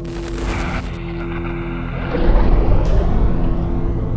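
Dark, eerie soundtrack music with a steady low drone, cut through by a rushing whoosh at the start and a deep boom about two seconds in that rumbles on to the end.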